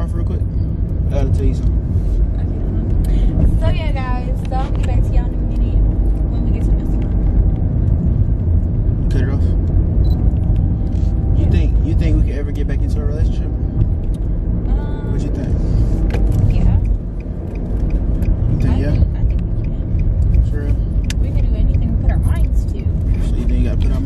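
Steady low road and engine rumble inside a moving car's cabin, with brief snatches of a voice over it.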